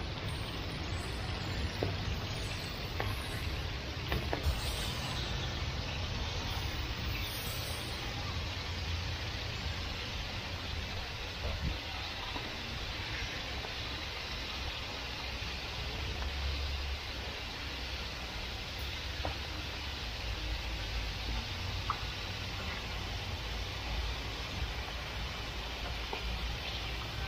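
Hot oil sizzling steadily in a deep fryer as large breaded chicken cutlets fry, over a steady low rumble, with a few light clicks of metal tongs.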